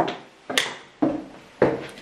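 Footsteps on a hard floor at a walking pace, about two steps a second, each a sharp knock that fades quickly.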